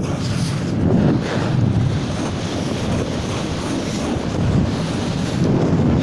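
Wind rushing and buffeting on the camera microphone as a snowboard slides downhill, with the board scraping over packed snow.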